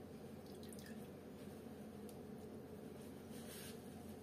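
Whey dripping faintly from a cheesecloth bundle of warm quark through a stainless-steel colander into the pot below, with a brief swishing sound near the end, over a steady low room hum.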